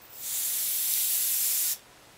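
Canned compressed air blowing through its thin straw nozzle in one steady, high hiss of about a second and a half that cuts off sharply.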